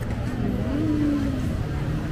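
Steady low rumble of road traffic, with one vehicle's engine note rising and then easing off around the middle.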